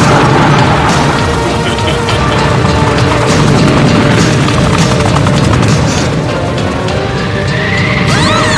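Anime battle sound effects of an energy attack: a continuous low blast with crackling running under dramatic background music. Near the end a whine rises and falls.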